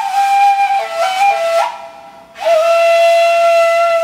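Plastic Arabic ney in Kiz (B) playing a slow, breathy Segah taksim. A held note steps down to a lower one with small ornaments, breaks off for a breath a little under two seconds in, then comes back on a long steady note.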